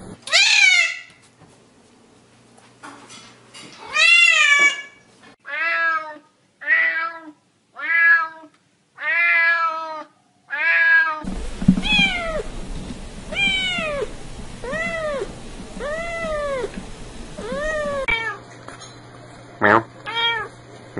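Domestic cats meowing, several cats one after another: a run of short, repeated meows about one a second, each rising and then falling in pitch.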